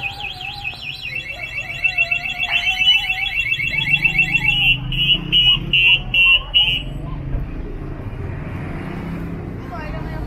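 Vehicle anti-theft alarm going off and cycling through its tones: a rising-and-falling wail, then a fast warble about a second in, then a string of short beeps, stopping about seven seconds in. Street noise continues underneath.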